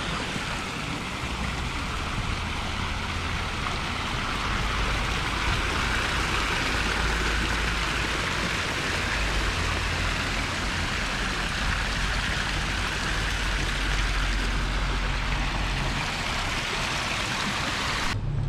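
Small public fountain splashing steadily, water from its jets and spouts falling into a shallow stone basin, with a low rumble underneath.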